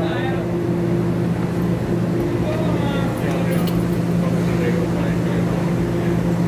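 Steady low hum of a stationary TEMU2000 Puyuma tilting electric train standing at the platform, with faint voices in the background.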